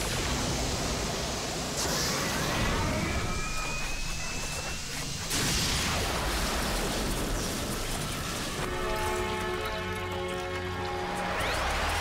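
Cartoon sound effects of a crackling electric energy beam blasting, a dense rushing noise with sudden surges about two and five seconds in, over a dramatic music score. Sustained music chords come to the fore from about nine seconds, with rising sweeps near the end.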